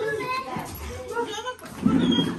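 Indistinct talking in the background, with children's voices among the adults'.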